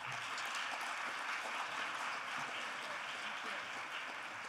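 Audience applauding steadily, the clapping starting to die down near the end.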